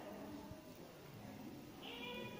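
Faint, indistinct background voices over a low room hum.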